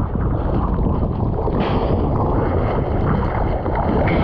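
Strong wind buffeting an action camera's microphone, with water rushing and splashing around a kiteboard in choppy sea. A brighter hiss joins in about a second and a half in.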